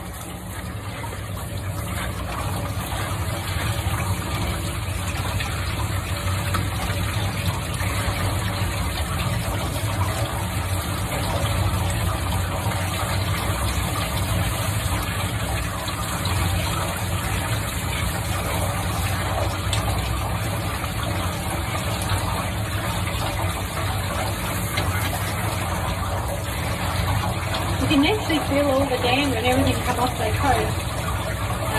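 Water from a handheld shower sprayer running steadily onto a wet cat's coat, a continuous rush of water over a steady low hum.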